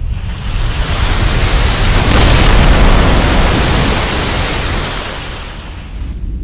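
A wash of noise in the track's electronic production swells for about three seconds and then fades away, over a steady deep bass.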